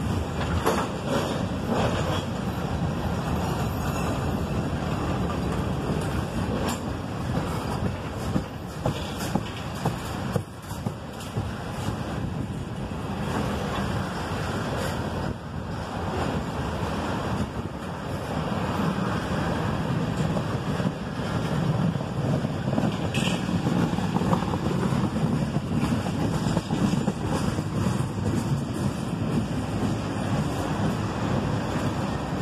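Freight train's tank cars rolling past: a steady rumble of steel wheels on the rails, with scattered clicks and clanks.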